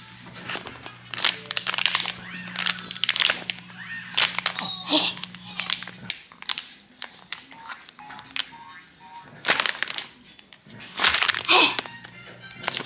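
A baby's hands crinkling a foil baby-food pouch, in irregular crackles, over background music.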